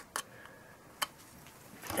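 Two small sharp clicks about a second apart, from a micro SD card being handled at the card slot of a FrSky Taranis transmitter's plastic case.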